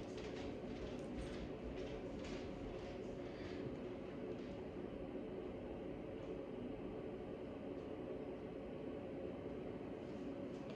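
Steady low background hum with a few faint rustles of a small piece of torn paper towel in the first few seconds, as it is handled and dabbed onto wet paint.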